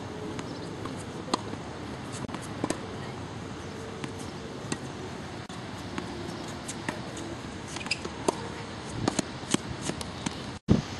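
Tennis ball being struck by rackets and bouncing on a hard court during a rally: sharp pops spaced a few seconds apart, with several in quick succession near the end, over steady background noise.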